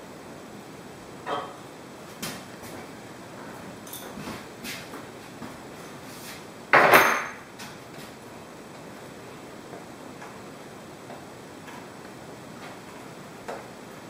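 Scattered metallic clinks and knocks from a wrench working the bolts and aluminium bars of a screen-mesh stretching frame, with one louder, briefly ringing clank about seven seconds in.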